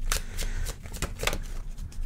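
A deck of tarot cards being shuffled by hand: a string of quick, irregular card clicks.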